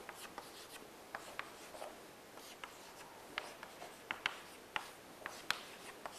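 Chalk writing on a chalkboard: faint, irregular taps and short scratches as lines and letters are drawn.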